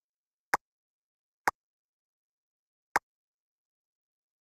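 Three short, sharp clicks, the second about a second after the first and the third about a second and a half later.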